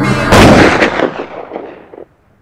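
A single loud gunshot-like blast closing a hip hop track, its echo dying away over about a second and a half.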